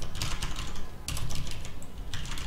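Typing on a computer keyboard: a quick run of keystroke clicks, with a brief pause about a second in.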